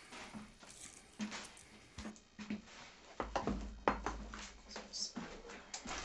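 Metal spoon scooping mashed potato and dropping it into a springform pan: a scatter of faint, soft taps and scrapes.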